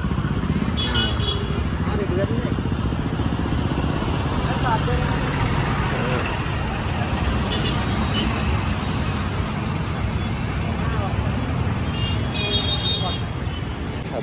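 Road traffic: a steady motor-vehicle engine rumble, with short horn toots about a second in and again past halfway, and a longer horn blast near the end.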